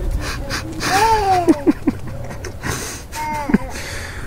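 A young child's wordless vocalizing: a long drawn-out cry that rises and then falls in pitch about a second in, and a shorter falling one a little after three seconds, over wind rumbling on the microphone.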